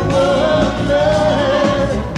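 Live pop band music, with a male lead singer holding one long note over the band.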